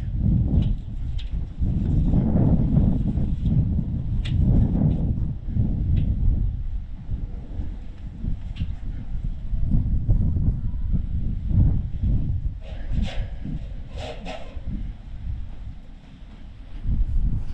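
Wind rumbling and gusting across the microphone, over the soft rubbing of an abrasive scuff pad and then a cloth wiped along a security door's frame, with a few light clicks.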